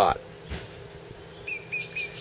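A small bird chirping a quick run of short, even, high notes at one pitch, starting about a second and a half in. A soft knock sounds about half a second in.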